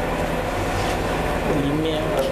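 Steady low hum and noisy room sound from an amplified sound system. A man's voice comes in over the loudspeakers near the end.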